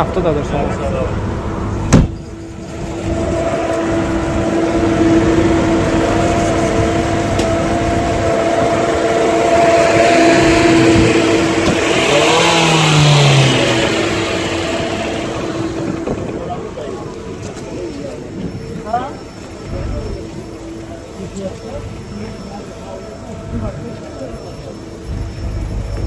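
Mercedes-Benz 230.6 (W114) inline-six engine running steadily, swelling louder for a few seconds midway. There is a sharp knock about two seconds in.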